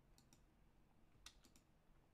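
Near silence with a few faint computer mouse clicks: two near the start and a quick cluster of about three a little past the middle.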